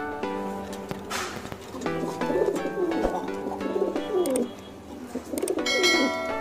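Jacobin pigeons cooing, a run of wavering, rising-and-falling coos from about two seconds in and again near the end, over plucked-string background music.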